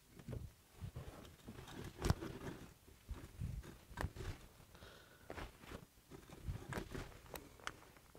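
1890 Millers Falls hand-cranked breast drill turning a one-inch spade bit into a wooden board in its second gear: quiet, irregular clicks and knocks from the gearing and the bit scraping at the wood. In this gear the bit is cutting slowly.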